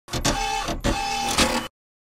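Channel intro sound effect: two similar noisy, mechanical-sounding bursts of about three quarters of a second each, both carrying a steady high tone. The effect cuts off abruptly.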